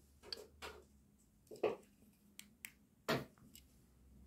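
A few sharp clicks and taps at irregular moments, two louder knocks among them, about a second and a half in and about three seconds in.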